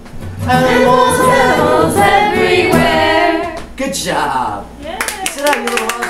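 A few adults singing together, then, from about five seconds in, a short run of hand clapping mixed with laughing voices.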